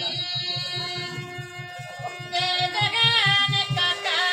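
Live Bengali folk music: harmonium and clarinet holding a melody over a fast, even drum beat of about five to six strokes a second. About two and a half seconds in, the music gets louder as a wavering sung melody comes in.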